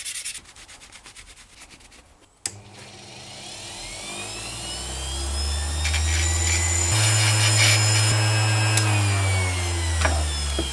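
Hand rubbing strokes on the cast-iron plane part at first. About two and a half seconds in, an electric power-tool motor clicks on, builds up speed over several seconds into a loud steady hum, and starts to wind down near the end.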